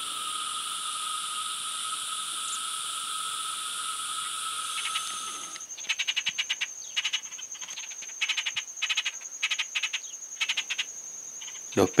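A steady high buzzing drone for the first five to six seconds. Then brown-and-yellow marshbirds give harsh, rapidly pulsed calls in many short bursts over a thin steady high whine: fledglings crying to be fed.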